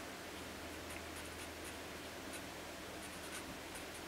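A pen writing on paper: short, faint scratching strokes, several in quick succession.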